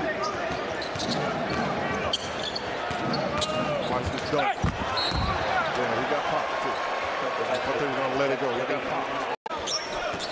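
Live basketball game sound in a large arena: a basketball bouncing on the hardwood court, short sneaker squeaks and crowd voices, with a brief dropout near the end.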